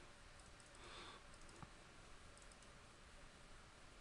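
Near silence: room tone, with a single faint click about a second and a half in.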